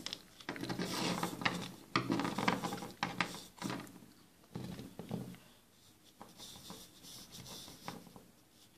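Small plastic toy figures being handled and set down on a tabletop by hand: irregular rubbing and scraping with a few light taps and clicks.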